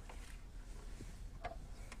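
Quiet room tone with a steady low hum and two faint short knocks, one about halfway through and one about three quarters through.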